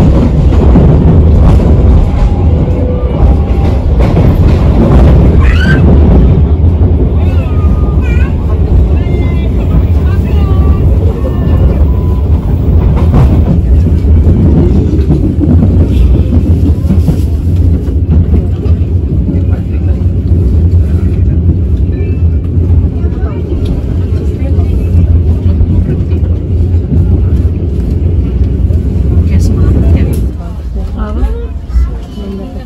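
Inside an economy-class passenger carriage of the KA Bengawan train while it is running: a loud, steady low rumble from the moving train. Voices are heard over it, mostly in the first half.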